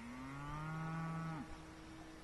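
A cow mooing: one long call of about a second and a half that breaks off near the end, with a fainter lowing carrying on beneath it.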